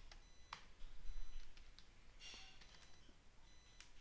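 A few faint, widely spaced keystrokes on a computer keyboard, over a faint steady high-pitched electronic whine.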